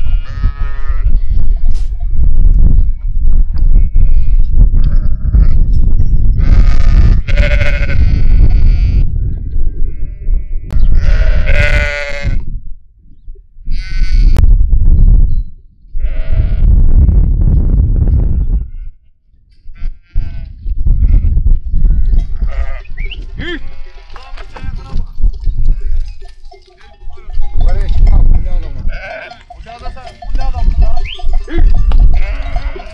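A flock of sheep bleating in a pen. Several loud, drawn-out bleats with a wavering quaver come in the first half, then many short, overlapping calls from the flock near the end, all over a heavy low rumble.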